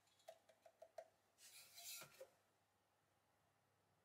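Faint handling sounds of a clay pot on a potter's wheel head: a few light ticks in the first second, then a short soft rub about a second and a half in.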